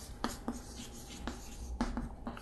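Chalk writing on a chalkboard: a string of short, separate taps and scrapes as letters are stroked on, about six over two seconds.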